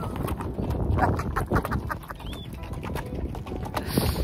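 Horses walking on a stony dirt track, their hooves clopping irregularly as several horses move in single file.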